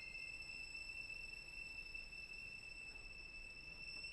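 Violin holding one very high, thin note, quiet and steady.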